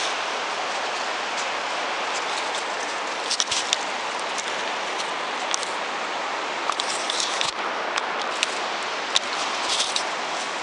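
Steady rushing of river water, with scattered light clicks and crunches of loose shale underfoot.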